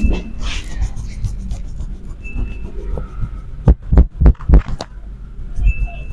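Dull thumps of hands tapping and pressing on a head during a head massage, with a quick run of about five about two thirds of the way in, over a steady low hum.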